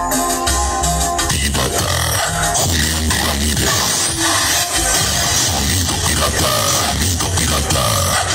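Loud music played through a large street sound-system rig, with heavy bass. About a second in, held organ-like notes give way to a denser electronic track.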